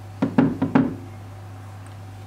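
Four quick knocks in under a second: a kitchen knife knocking against a ceramic baking dish while cutting through layered baklava pastry.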